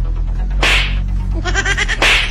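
Background music with a steady low drone and a whip-like swoosh sound effect about two-thirds of a second in, followed near the end by a quick run of short, rising chirps.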